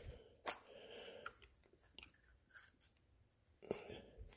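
Mostly near silence, with a few faint clicks and rubs as gloved hands handle and pull apart the unscrewed metal case of an SWR meter: one click about half a second in and another near the end.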